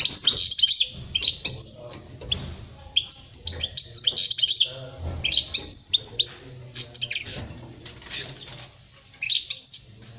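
European goldfinch singing: quick, high twittering phrases of chirps and trills, coming in bursts of a second or two with short pauses between them.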